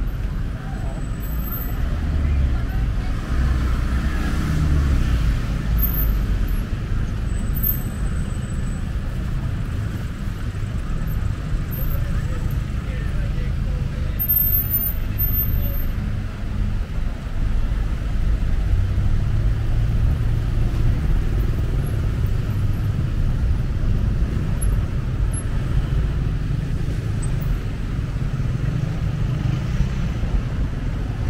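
Road traffic on a busy street: cars, vans and motorbikes passing in a steady low rumble that swells twice as vehicles go by.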